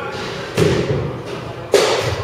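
Two sharp knocks of baseballs being struck, about a second apart, the second louder, each echoing briefly in a large hall.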